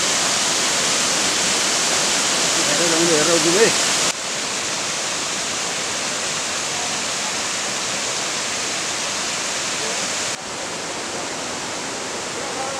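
Muddy floodwater rushing down a landslide gully in a steady, loud torrent. The rushing drops in level abruptly about four seconds in and again near the end, and a voice speaks briefly around three seconds in.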